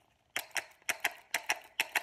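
Homemade cardboard castanets with metal and plastic bottle caps taped on, clapped shut in the hands: a quick, uneven run of sharp clicks, about four or five a second and often in pairs, starting about a third of a second in.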